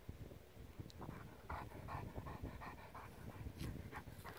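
A Newfoundland dog panting faintly in short, even breaths, about three a second, starting about a second in.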